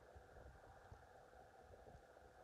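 Near silence: the faint, steady sound of a Vornado table fan running on its low speed.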